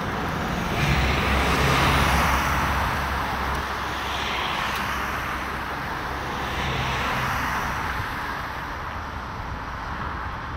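Road traffic passing close by: one vehicle's engine rumble and tyre noise swell loudest about one to three seconds in, and more vehicles go by after it over steady traffic noise.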